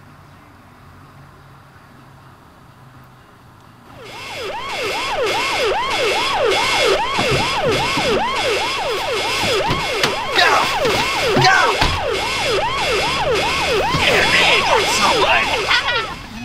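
After about four seconds of quiet background, an emergency-vehicle siren comes in and runs in a fast yelp, its pitch sweeping up and down about twice a second.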